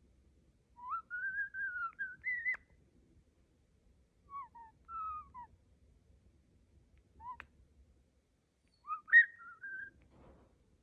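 European starling whistling in clear, pure phrases: a long wavering whistle that rises and ends in a sharp click about a second in, a few short falling notes in the middle, a brief note with a click, and the loudest rising phrase near the end.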